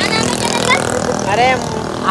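Boys' voices talking and calling out over the steady hum of a running engine.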